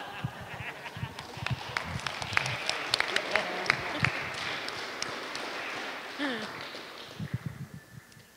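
A small audience applauding with scattered claps that thin out and fade after about four or five seconds.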